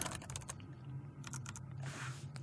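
Computer keyboard typing: a scattering of faint, quick keystroke clicks as a console command is entered.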